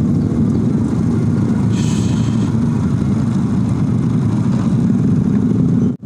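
Motorcycle engines running steadily at low speed in a slow-moving line of motorbikes, with a brief hiss about two seconds in.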